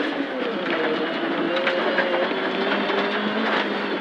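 Proton Satria 1400S rally car's engine heard from inside the cabin, pulling at a fairly steady moderate pace with its note rising slightly, with a few light ticks over it.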